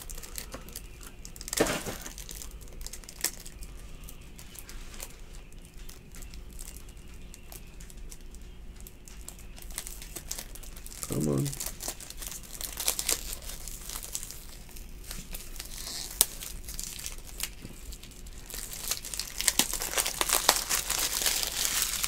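Foil trading-card pack wrappers crinkling and tearing as packs are opened, with light rustles and clicks of cards being handled; the crinkling gets busier near the end.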